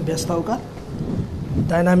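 Voices speaking over a stage microphone, with a stretch of low, muffled noise in the gap between them about a second in.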